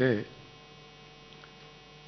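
Faint steady electrical mains hum through a microphone and public-address chain, after a man's voice trails off just at the start.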